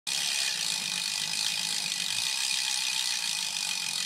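Rapid, steady clicking of a bicycle freewheel ratchet, as a wheel spins freely, starting abruptly.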